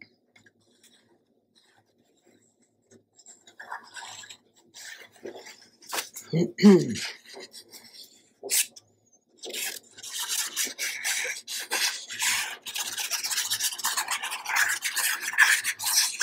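Fine-tip glue bottle's applicator scraping and rubbing along paper as a line of glue is laid down, a continuous dry rubbing through the last six seconds or so. A throat clearing comes about halfway through.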